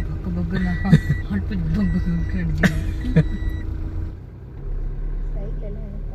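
Inside a moving car's cabin: voices and laughter over the low running noise of the car, with a high electronic beep sounding on and off. After a cut about four seconds in, only the steady low hum of the car driving remains.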